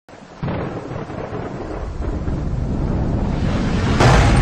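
A thunder-like rumble that starts suddenly about half a second in and swells steadily louder, a sound effect for the video's opening.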